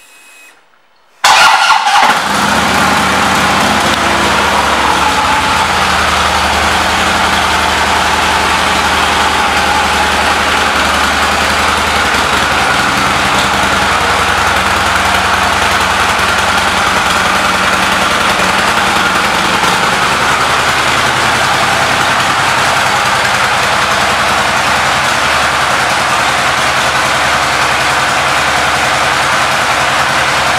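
Harley-Davidson Road King's Twin Cam 103 V-twin engine starting with a sudden catch about a second in, then idling steadily with no revving.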